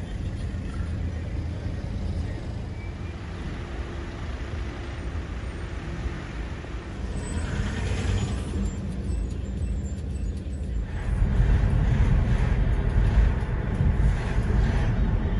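Congested road traffic with cars moving slowly in a queue: a steady low rumble of engines and tyres with hiss over it. The hiss swells about seven to eight seconds in, and the traffic gets louder near the end.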